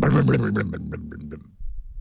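A man imitating an old engine bursting into life with his voice: a rapid, pulsing sputter that fades over about a second and a half, followed by a short laugh.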